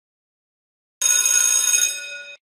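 A bell-ring sound effect for a notification-bell icon. It is silent at first, then about halfway in a bright ring of several steady high tones starts suddenly and carries on.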